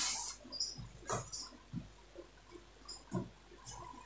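Printed fabric being spread out and smoothed by hand on a table: a few short, soft rustles and brushes, spaced apart.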